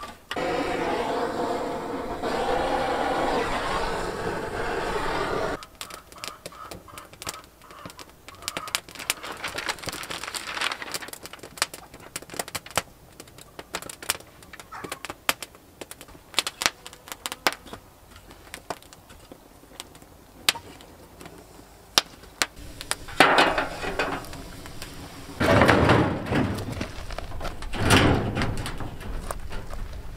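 A wood fire being lit in a smoker's firebox: paper rustles loudly for about five seconds, then the paper and kindling catch with many small crackles and snaps. Three louder bursts of rushing noise come in the last third.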